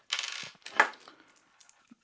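Small metal tools handled on a tabletop: a short scrape, then one sharp metallic clink a little under a second in, followed by a few faint ticks.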